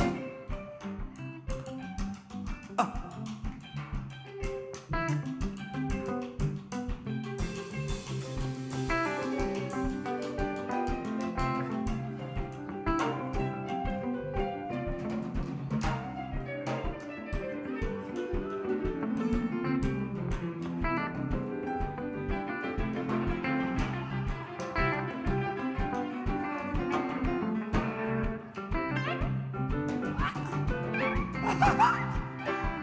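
Live band playing an instrumental passage with no singing: guitar over upright double bass, piano and a steady drum beat.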